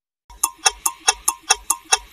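Rapid, even clock-like ticking, about five sharp clicks a second, starting about a third of a second in: the ticking sound effect of a broadcaster's closing station ident.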